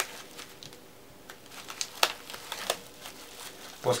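Plastic bubble wrap crinkling and crackling in the hands as it is folded around a TV remote and held in place with rubber bands, with a few sharper crackles about two seconds in.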